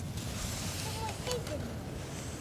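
Wind rumbling on the microphone over a steady hiss of surf, with a few faint high-pitched vocal sounds about a second in.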